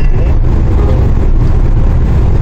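Steady low rumble of a moving Daewoo Rezzo LPG minivan heard from inside the cabin: engine and road noise while driving on the open road.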